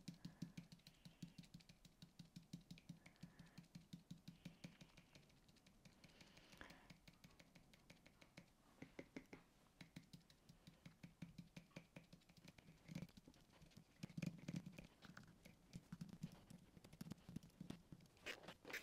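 Faint, rapid dabbing of a small fingertip sponge dauber pouncing ink through a plastic stencil onto card: soft taps several times a second, with a short lull partway through.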